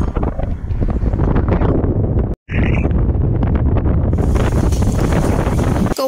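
Heavy wind buffeting the microphone as it moves along a road, a steady low rumble, cut off for an instant about two and a half seconds in.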